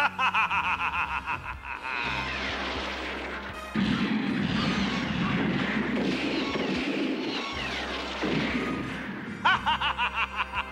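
A man's gloating laughter for the first two seconds, then a long cartoon crash-and-tumble sound effect with falling whistles as a craft slides down a snowy slope, heavier from about four seconds in, over music. The laughter returns near the end.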